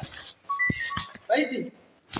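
Two short electronic beeps about half a second apart, each a steady tone, then a brief vocal sound.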